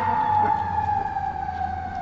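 A siren sounding one long wailing tone that slowly falls in pitch and grows fainter.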